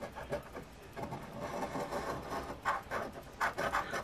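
A coin scraping the scratch-off coating from a lottery ticket in quick, repeated strokes.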